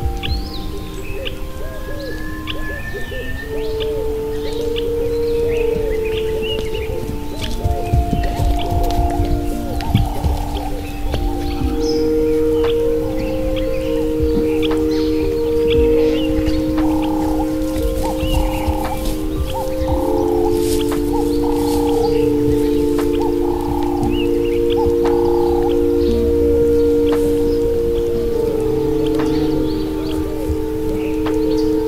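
Slow ambient meditation music: long held pad chords that shift every few seconds, with bird chirps mixed in.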